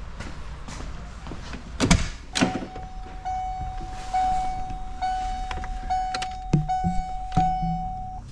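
Two heavy thunks from a first-generation Ford Explorer's driver door and cab as someone climbs in. Then a steady, high-pitched warning buzzer from the dashboard sounds for about five seconds, broken by several sharp clicks.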